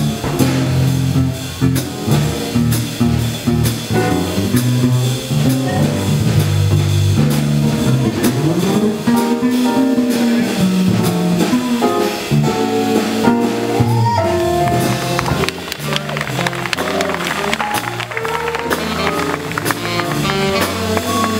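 Small jazz combo playing live: walking electric bass, a Ludwig drum kit with cymbals, and electric keyboard. Saxophone and trumpet come in over the last few seconds.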